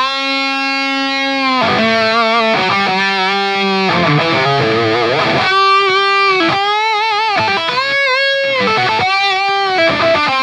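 Distorted electric guitar played through a Big Joe Stompbox Hard Tube Overdrive set for a high-gain lead tone: single-note lead lines, opening on a note held for over a second, with several long sustained notes near the end shaken with wide vibrato.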